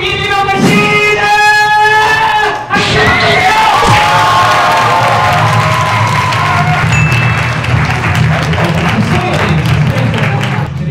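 A man singing long, wavering held notes through a microphone, giving way after about three seconds to a loud crowd cheering and screaming.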